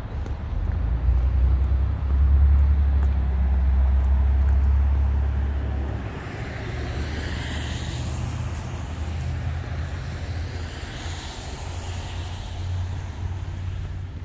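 Road traffic on a wet road: a heavy low rumble through the first half, then the tyre hiss of cars passing, swelling and fading twice.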